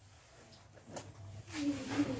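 A woman's drawn-out, wordless hesitation sound near the end, after a short quiet pause with a faint click about a second in.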